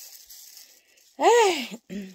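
A woman's voice making one drawn-out sound whose pitch rises and falls, about a second in, with a short voiced sound at the end. Before it, a faint rustle of plastic gloves and a dye brush working through hair.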